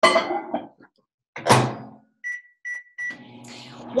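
Microwave oven being shut and started: two loud thunks, then three short keypad beeps as the heating time is set, then the oven starts running with a steady low hum.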